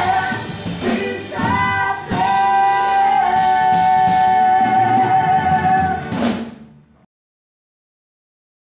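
Rock-musical singing with band accompaniment, ending on a long held note that fades out; the sound stops entirely about seven seconds in.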